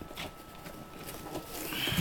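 Faint handling noises from items being moved about inside a cardboard box, with a soft plastic rustle near the end.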